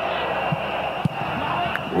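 Steady roar of a packed football stadium crowd from a match broadcast, with a couple of faint dull thumps.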